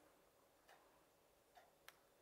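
Near silence with three faint clicks, the sharpest near the end, from a small magnetic marking piece being set onto a magnetic chalkboard.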